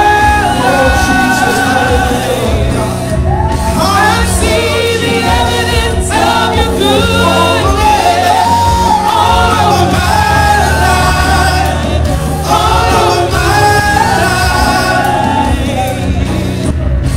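Gospel singing: a man and women singing into microphones over a steady musical accompaniment, with long held, wavering notes.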